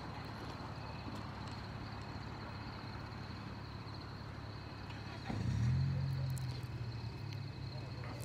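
Steady street background noise; about five seconds in, a vehicle's low engine hum comes up and holds steady.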